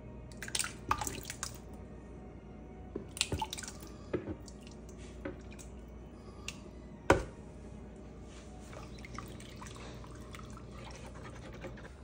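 Seafood stock poured from a plastic pitcher into a pot of thick tomato sauce, splashing and dripping in irregular bursts, with one sharp knock about seven seconds in.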